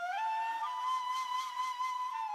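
Solo flute with breathy air, stepping up from a lower note to a higher one just after the start and holding it. It plays through a dynamic EQ that cuts its midrange ahead of a compressor.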